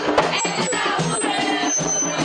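Live music from a hand-drum ensemble, with regular drum strokes, and a man singing into a microphone over it.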